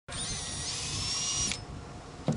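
Electric bow thruster motor running with a high-pitched whine that steps up in pitch about half a second in, then cuts off suddenly after about a second and a half.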